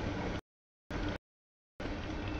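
Freight train of tank cars rolling through a grade crossing, a steady rumble of wheels on rail. The sound comes in choppy fragments, cutting out to dead silence twice.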